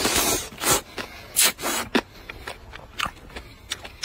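A person slurping hot and sour noodles off chopsticks in several loud sucks over the first two seconds, then chewing with short, wet clicks.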